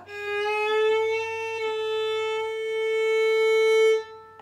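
Violin's open A string bowed in one long note while its peg is turned: the pitch slides up from flat during the first second, then holds steady at the tuned A. It is the string being brought back up to pitch after being tuned low, and it cuts off at the end.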